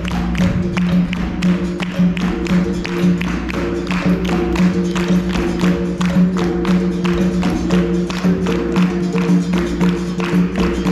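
Live capoeira roda music: an atabaque hand drum and the circle's hand clapping in a quick, even rhythm, over steady low sustained tones.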